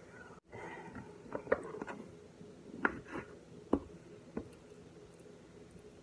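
Light knocks and taps on a wooden cutting board as cut pieces of raw chicken thigh are handled, five or six sharp ones spread over the first few seconds.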